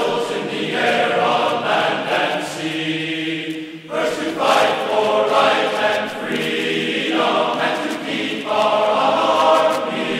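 Choral music: a choir singing long held notes that change every second or so.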